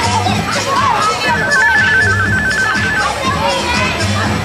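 Music with a bass beat plays over a crowd of children and adults talking and shouting. For about two seconds in the middle, an electronic tone warbles rapidly between two pitches, like a phone ringing, over the top.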